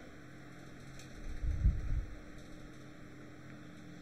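Faint steady electrical mains hum on the recording, with a brief low rumble against the microphone about one and a half seconds in and a faint click just before it.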